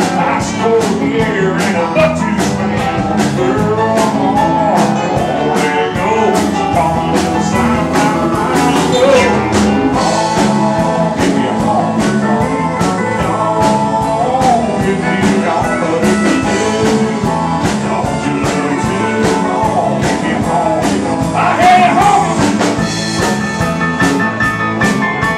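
Live honky-tonk country band playing with a steady beat, acoustic guitar and fiddle in the mix.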